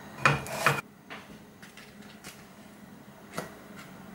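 A slotted spatula knocking and scraping against a nonstick frying pan as a cooked pancake is lifted out: two sharp knocks close together in the first second, then a few lighter taps.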